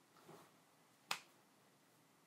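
Near silence broken by a single sharp click about a second in.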